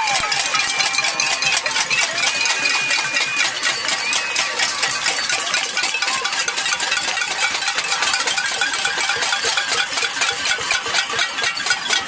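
A crowd banging pots, pans and lids in a protest cacerolada: a dense, continuous metallic clatter of many rapid, overlapping strikes.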